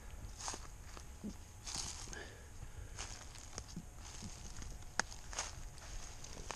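Footsteps through dry leaf litter and undergrowth on a woodland floor: a string of irregular crunches and rustles, with one sharper click about five seconds in.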